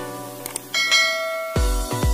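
Background music with a bright, ringing bell chime sound effect, held about a second from roughly a third of the way in. Near the end an electronic dance track with a heavy kick drum comes in.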